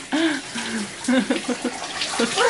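Shower spray running steadily onto a person in a small tiled bathroom, with short snatches of voices over it.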